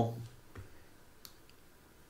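A few faint, sharp clicks, about three, from a computer mouse being clicked while on-screen annotations are drawn.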